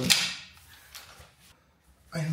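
A single sharp click of a torque wrench breaking over at its set torque as the oil drain bolt of a Suzuki SV650 is tightened, ringing briefly before dying away. Faint handling noises follow.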